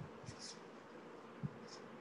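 Faint background hiss from a video-call microphone, with a few soft low knocks and short, high hissy ticks.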